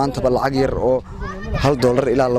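Speech only: a man talking.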